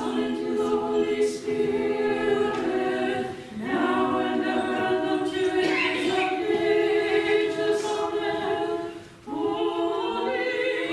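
Monastic choir singing unaccompanied Orthodox liturgical chant in long held notes, with brief breaks about three and a half seconds in and again near nine seconds.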